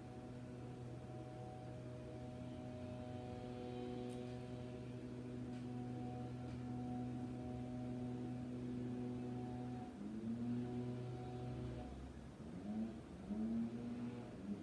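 A steady low hum with several overtones holds for about ten seconds, breaks off briefly, and comes back as short rising glides in pitch near the end.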